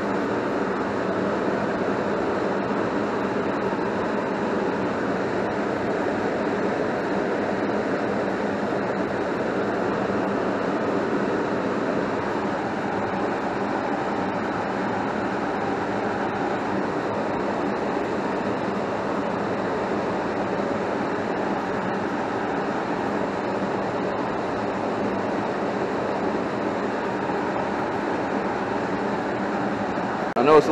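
Goodman 80% gas furnace running with its cabinet open: a steady, unbroken whir and rush of air from the X13 blower motor and the draft inducer motor, a little noisy.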